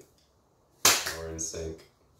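A single sharp hand clap a little under a second in, followed by a short drawn-out vocal sound.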